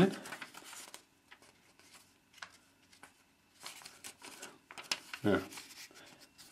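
Pages of a small paper LEGO instruction booklet being handled and flipped, rustling in short spurts that are busiest about four seconds in.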